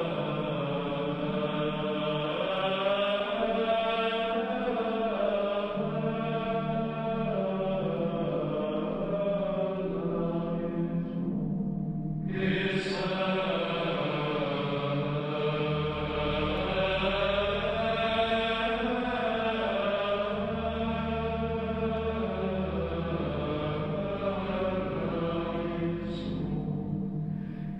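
Background music: slow chanting over a steady low drone, breaking off briefly about twelve seconds in and then starting again.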